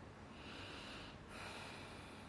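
A person breathing through the nose close to the microphone: two faint breaths in a row, each about a second long, the second one brighter and hissier.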